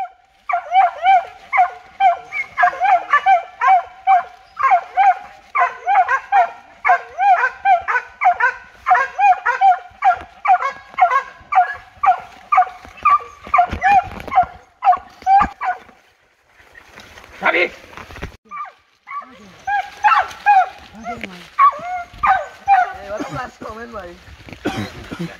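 Hunting dog barking in a fast, steady run of about two barks a second, baying at an agouti holed up in a burrow. The barking stops for about three seconds past the middle, then starts again.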